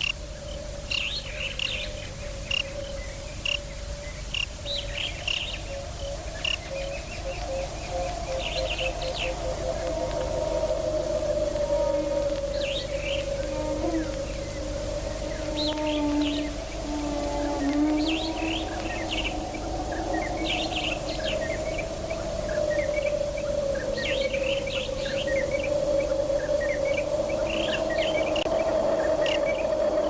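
Birds chirping in short, scattered calls over one long, slowly wavering held musical tone.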